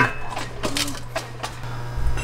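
A few light, sharp metallic clicks and knocks as a CV axle's splined shaft is worked into the front hub and knuckle, over a steady low hum.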